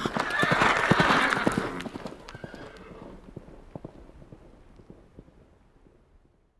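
Logo sound effect of a horse: a run of hoofbeats with a loud whinny from about half a second to two seconds in, then the hoofbeats die away over the last few seconds.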